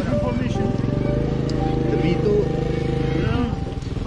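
A vehicle engine idling, a steady low drone under people's voices, which stops about three seconds in.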